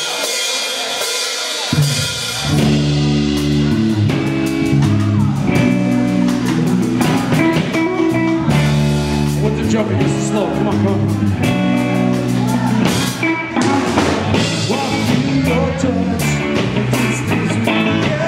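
Live ska-punk band playing: electric guitar, bass guitar and drum kit, with a horn section of saxophone and trumpets. A short thin intro gives way to the full band, bass and drums coming in about two seconds in.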